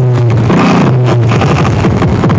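Loud electronic dance music with a heavy held bass note, played through a car sound system's speakers.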